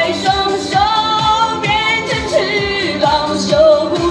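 A woman singing a Chinese pop song live into a handheld microphone, amplified through a street PA speaker over a backing track with a steady beat. Her voice holds long notes with vibrato.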